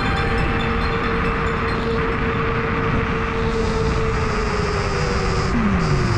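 Electric scooter riding at speed: a steady motor whine over wind and road rumble. The whine falls in pitch over the last couple of seconds as the scooter slows.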